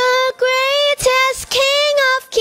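A girl singing into a handheld microphone: four held notes at nearly the same pitch, each separated by a short breath-length gap, the last one longest with a slight waver.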